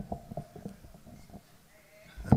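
Lectern microphone being handled and adjusted, heard through the PA: a string of short, faint knocks and creaks that die away after about a second and a half.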